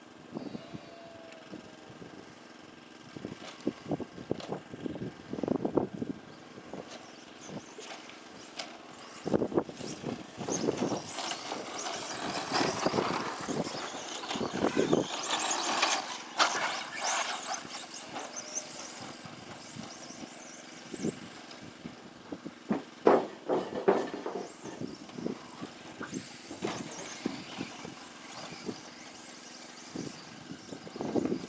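Radio-controlled short course trucks running on a dirt track, their sound coming and going in uneven bursts, loudest as one passes close by in the middle, with a few sharp knocks later on.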